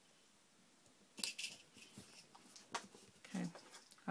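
Faint handling sounds of paper and hands on a cutting mat: a brief rustle about a second in, then a few small clicks and scrapes.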